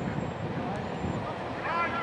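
People's voices talking, one voice clearer near the end, over a steady low rumble.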